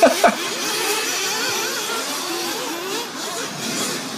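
Several 1/8-scale nitro RC buggies' small two-stroke glow engines buzzing in the race. Their whines overlap and rise and fall in pitch as the cars accelerate and back off.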